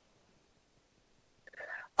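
Near silence in a pause between speakers, then a faint breath near the end just before the voice comes back in.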